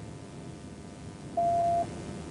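Police radio tone: a single steady electronic beep about half a second long, a little over a second in, over a low steady hiss.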